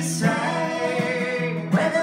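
Acoustic folk duet: a man and a woman singing in harmony and holding long notes, over two strummed acoustic guitars.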